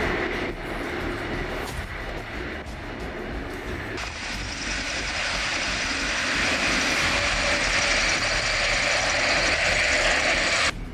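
Military turboprop transport aircraft running their engines on the ground. About four seconds in the sound changes suddenly to the louder, steady sound of an Airbus A400M's turboprop engines with their propellers turning.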